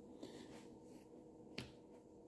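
Near silence: room tone, broken by a faint tick about a quarter second in and a sharper single click about a second and a half in.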